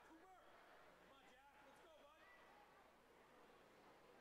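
Near silence: faint, distant voices over a steady low room hum.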